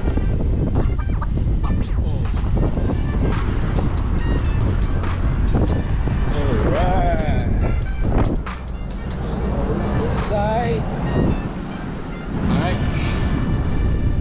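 Wind rumbling on the camera microphone over road traffic passing on the bridge, easing briefly a couple of times.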